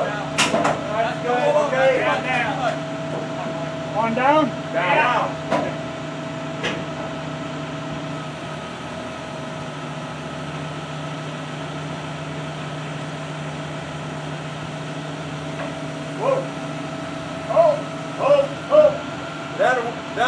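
Steady hum of running machinery holding one unchanging pitch, with men's voices calling out in short bursts at the start, a few seconds in, and again near the end.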